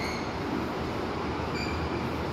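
Steady rushing background noise with a low hum, under chalk being written on a blackboard.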